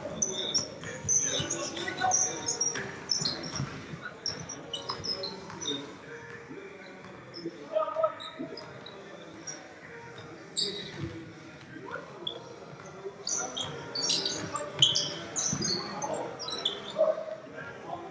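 Indoor basketball game on a hardwood court: the ball bouncing, many short high sneaker squeaks, and distant players' voices echoing in a large gym.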